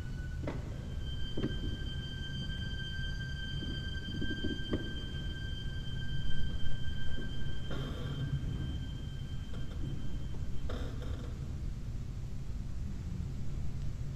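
Chamber orchestra recording played back over a video call: one high note held steady over a low rumble, swelling louder for a few seconds in the middle.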